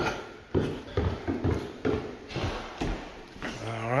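Footsteps on a hardwood floor, a string of short knocks about two to three a second.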